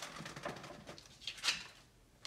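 Tarot cards rustling and sliding as the deck is handled to draw the next card, with a sharper swish about one and a half seconds in.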